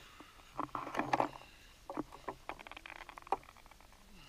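Faint, irregular rustling and scattered clicks of handled outdoor gear and clothing, with one sharper click near the end.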